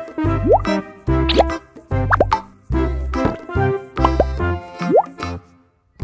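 Playful children's background music with a steady bass beat and a rising 'bloop' plop about once a second, stopping shortly before the end.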